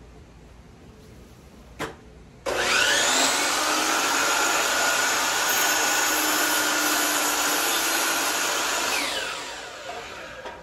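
DeWalt sliding compound miter saw motor switched on about two and a half seconds in. It spins up quickly to a loud, steady whine, then winds down with a falling pitch near the end once the trigger is released.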